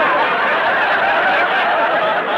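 Studio audience laughing, a loud, sustained laugh from many people at once, on an old radio recording with a narrow, muffled sound.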